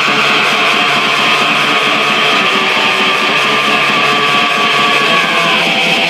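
Raw, lo-fi black metal recording: a dense, steady wall of distorted electric guitar with very little bass.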